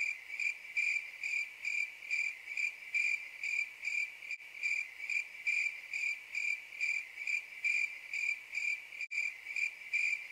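Crickets chirping, a sound effect for an awkward silence: a steady, even chirp about three times a second. It replaces the original sound, starting and cutting off abruptly.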